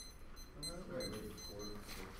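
Electronic timer alarm going off in short, high-pitched beeps repeated several times a second, with a quiet voice talking underneath.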